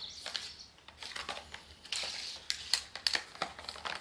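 Hand-winding a water hose onto a lightweight plastic storage reel: irregular clicks and rustling scrapes from the reel turning and the hose sliding into place.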